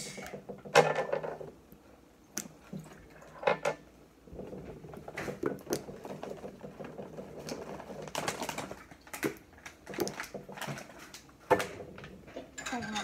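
Plastic squeeze bottle of ranch dressing squeezed upside down over a slice of bread: a string of irregular short squirts, taps and clicks.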